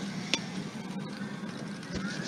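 Sci-fi film soundtrack between lines of dialogue: steady background hiss with faint rising electronic tones and a single short click about a third of a second in.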